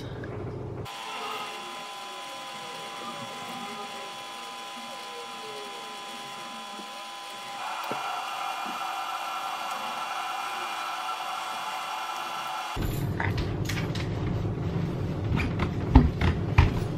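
Soft background music of sustained held chords, moving to a new chord about halfway through. In the last few seconds it gives way to a louder, fast, chattering stretch of sped-up room sound with clicks.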